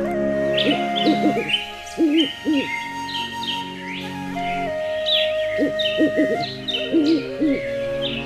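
An owl hooting in four short runs of quavering hoots, over sustained background music with high, quick bird chirps throughout.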